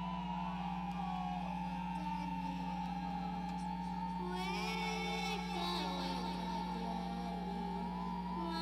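Live band music: a steady low drone under a wavering high melodic line, with more gliding high tones joining about halfway through.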